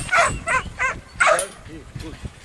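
Young black-and-tan kelpie barking in a quick run of short barks while working sheep in a yard, a yard dog barking to push the mob forward; the barks turn softer near the end.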